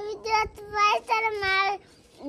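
A young child's high voice singing a few drawn-out syllables in four short phrases, the last held for most of a second.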